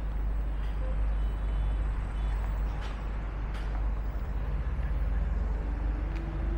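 Street traffic noise: a steady rumble of passing vehicles, with a couple of faint clicks midway.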